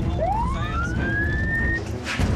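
A police siren winding up in one wail that rises steeply, levels off and cuts off near the end, over a low rumble.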